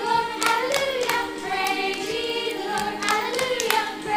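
A woman and a group of small children singing a children's song together, her voice leading, with scattered hand claps breaking in irregularly.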